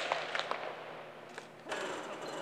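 Baseball practice sounds: a few short, sharp knocks and clicks, then a steady background noise coming in near the end.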